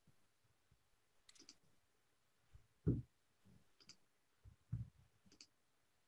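Faint, scattered small clicks and knocks picked up by an open microphone on a video call: a few sharp high clicks and a couple of duller low knocks, the loudest knock about three seconds in.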